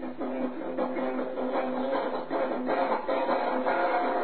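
Guitar strumming chords in an even rhythm, on a guitar left untuned, as the song's own lyrics admit.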